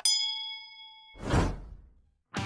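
A bell ding sound effect for a clicked YouTube notification bell: a bright ring that fades out over about a second. It is followed by a short whoosh.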